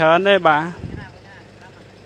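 A voice speaking briefly in the first second, followed by a short low, dull thump, then only a low steady background.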